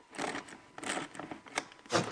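A wrench and screwdriver working a small nut and bolt on a vent-cover hinge bracket: a few short, irregular metal clicks and scrapes.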